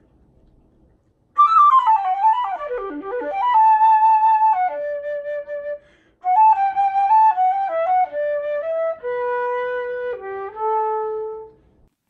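Unaccompanied silver concert flute playing a bird-like melody in two phrases: a quick falling and rising run of notes settling into held notes, a short breath, then a second phrase of stepping and held notes.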